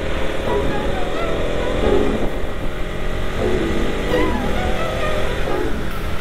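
Motorcycle running at a steady cruising speed, with road and wind noise, under background music.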